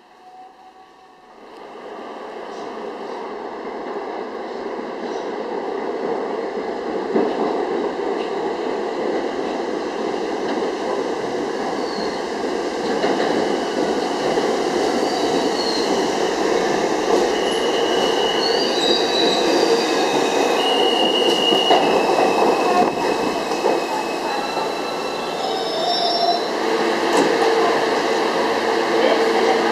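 An R68-series New York City subway train pulling into the station on steel rails. Its running noise grows louder from about two seconds in, and high wheel squeals come and go through the middle as it brakes to a stop.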